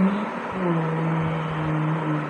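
A man's voice holding one long steady note, beginning about half a second in.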